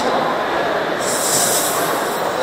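Steady hiss of escaping air, growing stronger and higher from about a second in: air leaking past a Velcro 'stubble' strip on a hand-held mask-seal demonstration prop, showing that the seal fails.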